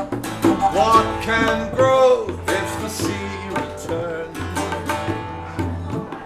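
Live acoustic folk music with no voice: a flute carries a sliding melody over a plucked cittern and tabla drums.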